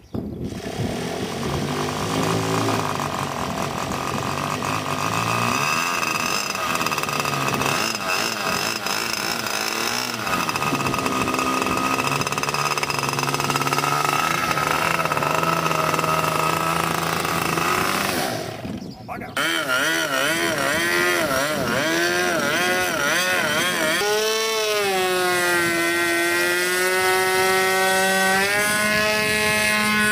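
A radio-control model airplane's small engine catches about a second in and runs steadily on the ground. After a brief drop near the middle, it is heard in flight, its pitch wavering up and down as the plane manoeuvres.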